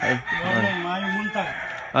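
A rooster crowing once, one long call of nearly two seconds.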